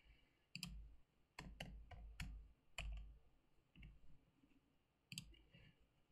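Computer mouse clicks: about half a dozen faint, sharp clicks at irregular spacing, each with a dull knock on the desk beneath it.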